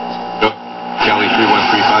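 1975 Chevrolet Nova AM-FM mono car radio being tuned. A steady hum gives way to a short click about half a second in, and about a second in a station's announcer comes through the radio's speaker.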